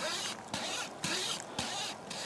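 Pocket wire saw being pulled back and forth around a small tree trunk, rasping through the wood in repeated strokes. The wire is rubbing hard enough to get hot and give off a little smoke.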